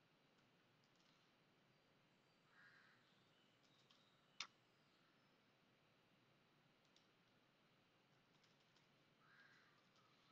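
Near silence with a few faint computer keyboard clicks as a password is typed, one sharper click about four and a half seconds in.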